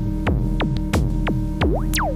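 Novation Circuit groovebox playing electronic music: short drum-machine hits about three a second over a sustained low pad drone, with a sound that falls sharply in pitch near the end.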